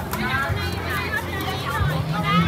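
Busy outdoor crowd chatter with children's high voices calling and playing, over background music with steady bass notes.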